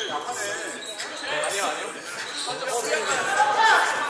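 Indoor pickup basketball game: players calling out to each other while a basketball bounces on the hardwood court, in a large gym hall.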